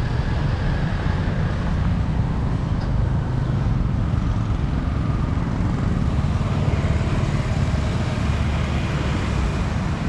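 Road traffic passing on a city street, motorbikes and cars, heard as a steady low rumble with no distinct single events.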